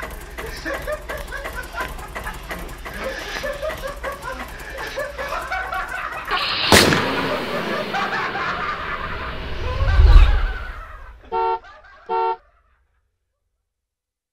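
Two short car-horn toots near the end, preceded by a sharp hit about seven seconds in and a deep boom about ten seconds in. Indistinct voices run underneath for the first six seconds.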